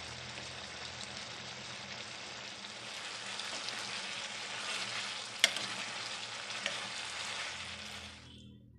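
Chayote-root and pea curry sizzling in a nonstick pan. About three seconds in it grows louder as a metal spoon stirs it, with one sharp knock of the spoon against the pan a little past the middle.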